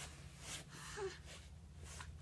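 Two-month-old baby's quiet breaths and a brief, faint little vocal sound about a second in, over a low steady room hum.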